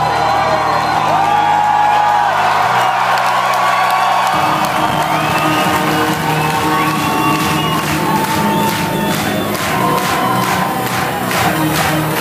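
Live rock band playing, heard from within a loud cheering and whooping crowd in a large hall: sustained low notes that step in pitch every second or two, and regular drum hits coming in near the end.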